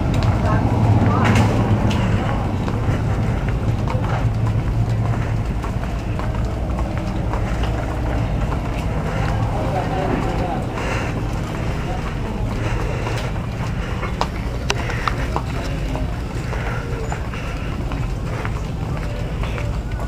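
Store ambience: a steady low hum with faint, indistinct voices and scattered small clicks and knocks.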